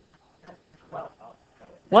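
Faint, scattered voices, students murmuring answers, with a loud woman's voice starting near the end.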